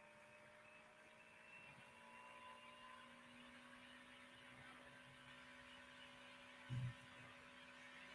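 Near silence: faint steady electrical hum of room tone, with one brief low sound about seven seconds in.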